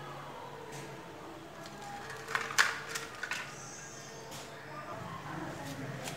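Plastic clicks and knocks from an air conditioner's control board and plastic housing being handled and set down on a bench. A cluster comes from about two and a half seconds in, one of them sharply louder, with a few faint taps later.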